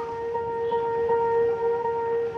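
A vehicle horn held in one steady, unbroken note, over road and engine noise from a moving motorcycle.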